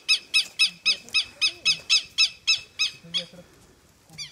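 A bird calling a fast, even series of short repeated notes, about four a second, that stops about three seconds in.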